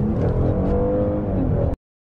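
2018 Hyundai Azera's engine accelerating hard from low speed, heard inside the cabin, its pitch climbing steadily; the sound cuts off suddenly near the end.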